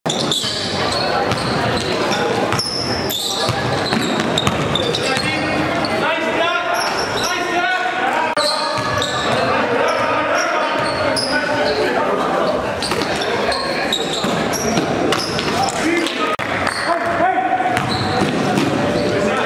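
Live basketball game sound in a gymnasium: a basketball bouncing on the court floor, with indistinct voices of players and spectators echoing in the hall.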